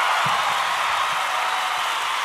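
Steady noise of a large crowd cheering, easing off slightly.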